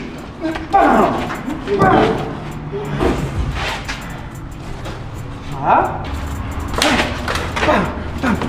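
Short wordless shouts and exclamations from the people rehearsing a fight, with a thud or two from bodies hitting a wall.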